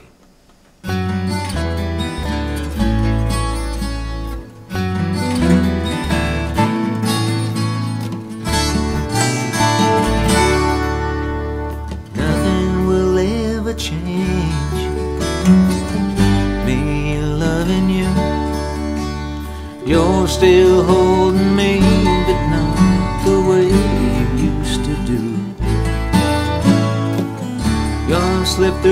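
Instrumental intro of a country song, starting about a second in: a twelve-string acoustic guitar strummed over a backing track with a stepping bass line.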